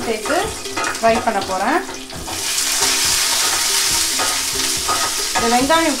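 Lentils, garlic and shallots frying in hot oil in a stainless-steel kadai, stirred with a wooden spatula; the sizzle gets louder about two seconds in, as the shallots go into the oil.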